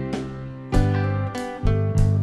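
Live rock band playing an instrumental passage: strummed guitars over bass and drums, with sharp accents roughly every half second.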